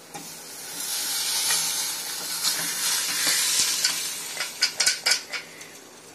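Hot fried masala in a steel pan sizzling as mutton stock is poured onto it, the hiss swelling and then dying down. It ends with a few sharp metal clinks of the pot and ladle against the pan as the meat pieces are tipped in.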